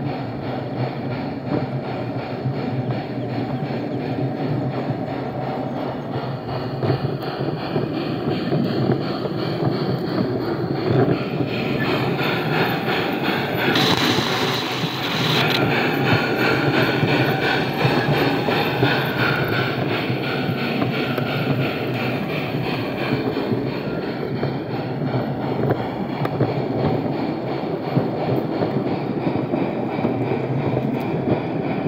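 Garden-railway model locomotive running along its track, its motor and gears whirring and its wheels rolling on the rails, heard up close from the wagon it pushes. About halfway through the sound turns louder and brighter for a couple of seconds as the train passes through a tunnel.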